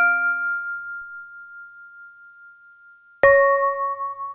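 Sparse electronic keyboard music: a chord rings out and fades until one high tone is left holding, then a new chord is struck about three seconds in and rings on.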